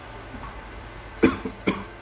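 A man coughing twice in quick succession, a little over a second in.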